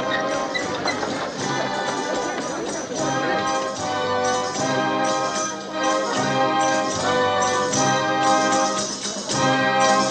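Orchestral film score with brass playing a succession of held chords, the music growing fuller about three seconds in.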